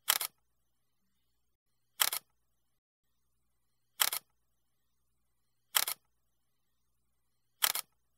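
Camera shutter clicking five times, about once every two seconds, each click a quick double snap.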